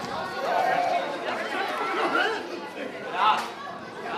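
Several people talking at once, with one louder, rising voice about three seconds in.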